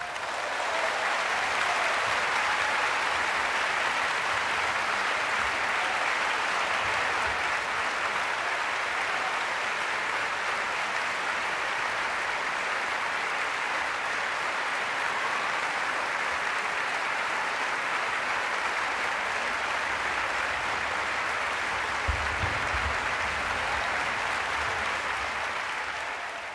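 Concert-hall audience applauding, the clapping swelling within the first second and then holding steady and dense.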